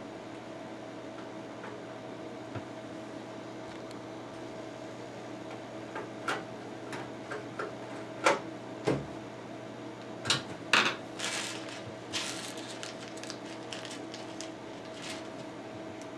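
Scattered small metallic clicks and a brief rattle of a screw and screwdriver against the sheet-steel drive bay of a computer case as a bolt is fitted by hand, starting about six seconds in, over a steady faint hum.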